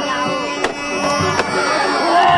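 Two sharp cracks of rattan fighting sticks striking, about three-quarters of a second apart, over music with sustained tones and crowd voices.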